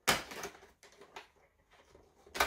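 Cardboard door of an advent calendar being torn open by fingers: the stiff door rips rather than opening cleanly, with a sharp tear right at the start, then a few faint crackles and clicks.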